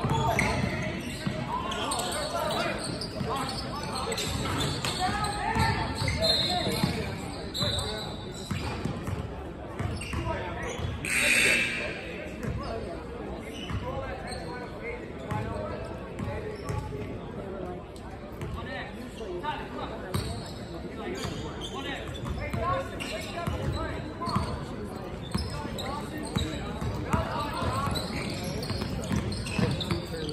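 Basketball bouncing on a hardwood gym floor during play, with indistinct voices echoing in the large gym. A brief, loud, high-pitched sound stands out about eleven seconds in.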